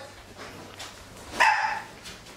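A dog barks once, a short sharp bark about one and a half seconds in.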